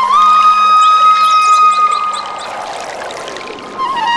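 Flute-like instrumental melody holding one long note, then the music gives way to a softer rushing noise for about two seconds before the ornamented melody comes back near the end.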